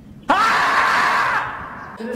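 The 'screaming marmot' meme sound edited in: one long, loud scream that starts sharply, holds for about a second and then fades away.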